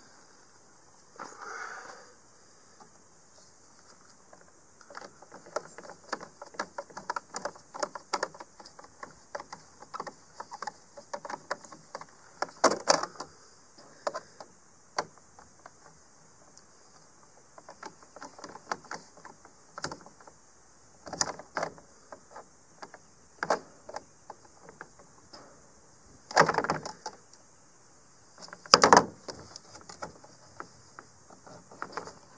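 Hand tools working on a plastic RV roof vent lid: a long run of small irregular clicks and rattles as a nut driver turns screws into the lid and locking pliers grip its metal hinge bar, with a few louder clacks about halfway through and near the end.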